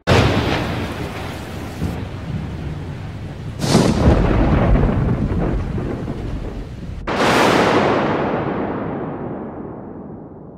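Thunder-crash sound effects: three crashes about three and a half seconds apart, each starting suddenly and fading off in a long rumble.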